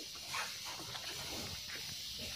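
A faint, brief animal call about half a second in, over a steady hiss.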